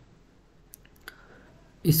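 A couple of faint computer mouse clicks close together, a little under a second in, as PowerPoint is switched to a new blank presentation.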